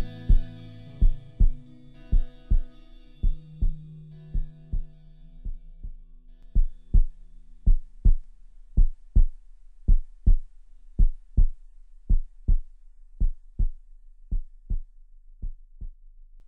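End of an instrumental post-rock track: sustained low chords fade out over the first half, leaving a steady heartbeat-like double thump, about one pair a second, that grows fainter toward the end.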